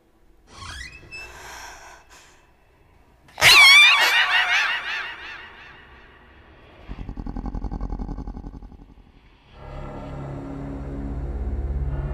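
Horror film score and sound effects: after a faint rising glide, a sudden loud shrill wavering stinger hits about three and a half seconds in and fades away, followed by a fast low pulsing and then a low drone with sustained tones near the end.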